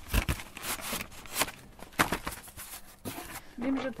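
A studio reel-to-reel tape editing machine being handled: a run of separate clicks and knocks from its controls and reels, with a low thump right at the start.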